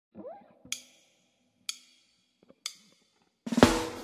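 A faint rising note, then three sharp count-in clicks about a second apart, like drumsticks or a closed hi-hat. About three and a half seconds in, a loud blues band comes in, with the Gibson Les Paul Goldtop electric guitar playing over the backing.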